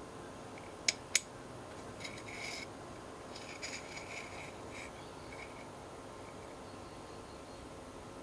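Two sharp clicks about a second in, then light scraping and rubbing as a small metal Finisar SFP fiber-optic transceiver module is handled and slid around by hand under a microscope.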